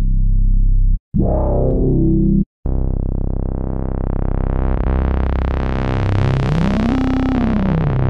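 Analog synth bass one-shot samples played back one after another, each cut off abruptly: two short ones in the first few seconds, then a long held bass note. The tone of that note opens up brighter and closes again as a synth knob is swept.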